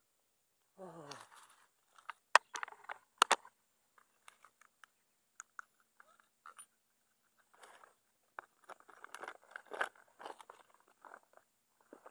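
Handling noise on a forest floor: a couple of sharp clicks and knocks, then a crackling, crunching rustle of dry leaf litter and twigs being disturbed near the end.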